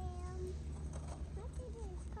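A young child's high-pitched wordless voice: a held note at the start, then short sliding calls near the end, over a steady low hum.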